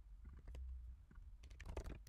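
Faint typing on a computer keyboard: a few scattered keystrokes, then a quicker run of them near the end.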